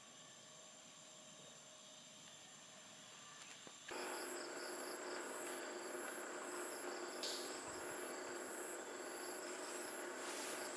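Insects chirring in grass and forest: a high trill pulsing about twice a second over a steady high buzz, starting suddenly about four seconds in after a few seconds of near silence.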